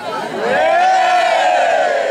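A large group of children and adults shouting and cheering together, swelling into one loud, sustained shout about half a second in.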